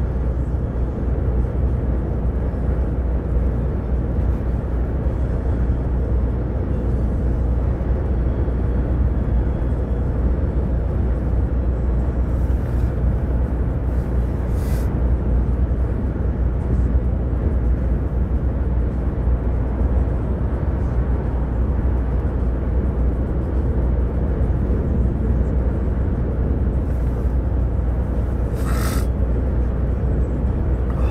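Steady drone of a lorry's engine and tyres heard inside the cab at road speed, with a strong low rumble. Two brief hisses come about halfway and near the end.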